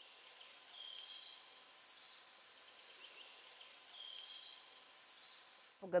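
A songbird singing the same short phrase of high whistled notes twice, about three seconds apart, faint over a steady outdoor hiss.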